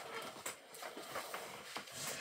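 Faint rustling and a few soft taps as a hardcover picture book is handled and its pages are turned.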